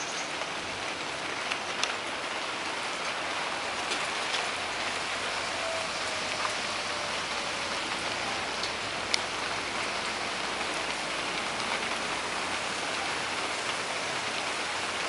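A copper penny reacting in nitric acid in a small cup, fizzing steadily as gas bubbles off it; the reaction is boiling pretty good, giving off a gas taken for nitric oxide. One or two faint clicks stand out from the steady fizz.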